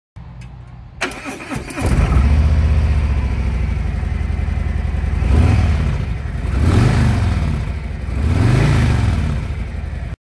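Touring motorcycle engine cranked by the electric starter, catching about two seconds in and settling to a steady idle. It is then revved three times, each rev rising and falling in pitch.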